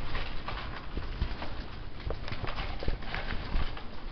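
Irregular soft taps and rustling of pet rats scurrying over a cloth sheet laid on a leather couch.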